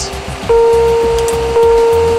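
Two low chimes, about half a second in and a second later, each a single steady tone that slowly fades. This is the Boeing 737 passenger-signs chime, set off as the No Smoking and Fasten Seat Belts toggle switches are flicked.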